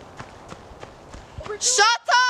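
A low background hush with a few faint clicks, then a person's voice starts speaking near the end.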